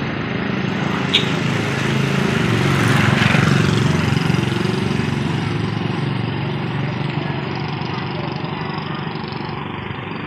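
A small motorcycle engine running on the lane, getting louder over the first three seconds or so and then slowly fading.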